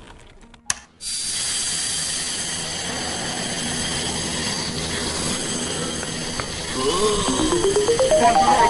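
Cartoon soundtrack: a sharp click just under a second in, then a steady hiss with high ringing tones, and near the end a quick rising run of musical notes.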